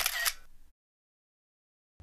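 A camera-shutter sound effect: one sharp click at the start with a brief mechanical tail, then dead silence for over a second.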